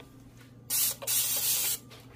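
Two bursts of spraying hiss into a stainless steel kitchen sink, the first short and the second, just after, about twice as long.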